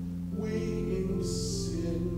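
A man singing a hymn over steady instrumental accompaniment, with a held chord underneath and a sung hiss of an 's' about halfway through.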